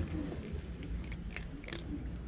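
Cat chewing dry kibble, with several short, sharp crunches as the pellets break between its teeth.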